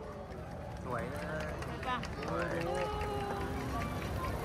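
Large crowd of spectators talking, many voices overlapping, over a steady low rumble. The chatter gets a little louder about a second in.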